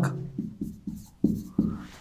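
Marker pen writing on a whiteboard: about five short, squeaky strokes as a word is written.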